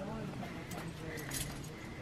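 Faint jingling of a dog's collar tags and harness as a Siberian Husky moves and turns.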